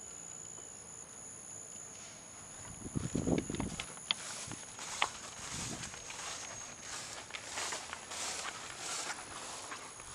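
Insects calling in steady high tones, one stopping about halfway through and the other a couple of seconds later. There are footsteps in grass and a brief rustle about three seconds in.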